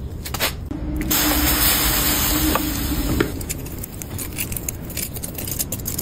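A loud hiss lasting about two seconds, with a steady hum beneath it, then a run of light clicks and scrapes as a stick digs a fresh metal casting out of foundry sand.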